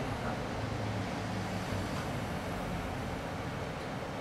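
Steady low hum and rumbling room noise.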